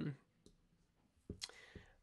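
A man's voice trails off on an 'um', then a quiet pause broken by a faint click and, about a second and a half in, a sharper mouth click with a short breath in before he speaks again.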